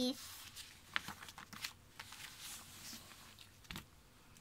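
Paper pages of a picture book being handled and turned: a soft, faint rustle with a few light taps.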